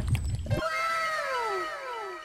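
A sound effect edited over the picture: a pitched tone sliding down, repeated several times over itself like an echo, starting about half a second in.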